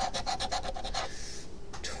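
A large coin scraping the coating off a paper scratch-off lottery ticket in rapid back-and-forth strokes. The strokes pause for about half a second after the first second, then start again near the end.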